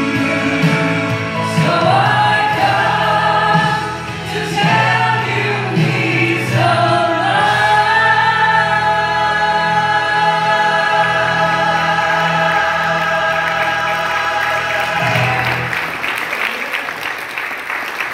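A woman sings a gospel solo into a microphone over a steady accompaniment, ending the song on a long held note that stops about fifteen seconds in.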